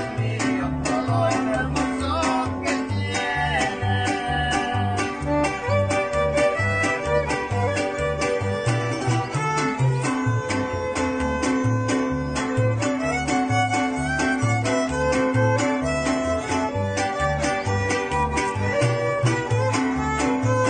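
A string ensemble playing an instrumental tune: two violins carry the melody over strummed small guitars and a large bass guitar picking a steady, rhythmic alternating bass line.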